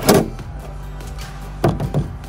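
Cordless drill/driver running in two short bursts about a second and a half apart, driving screws to fasten a rooftop RV air-conditioner shroud, with background music underneath.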